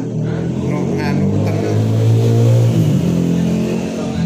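Corded electric hair clipper buzzing steadily as it shaves hair off a man's head, the buzz swelling loudest a couple of seconds in.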